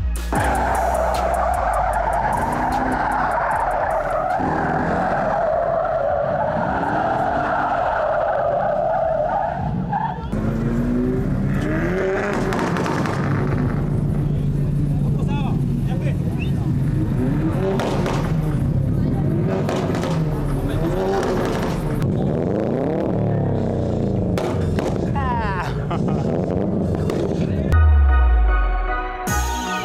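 Car tyres squealing in one long continuous skid as a car drifts, lasting about ten seconds. After that, car engines rev again and again, their pitch rising and falling.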